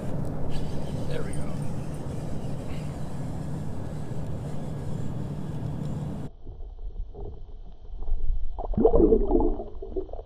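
Water noise around a kayak with a steady low hum. About six seconds in it changes abruptly to muffled underwater sound, with a loud gurgling, knocking burst of water near the end.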